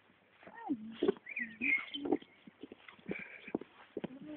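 A dog making short whining and grumbling sounds whose pitch slides up and down, over scattered soft footstep clicks on pavement.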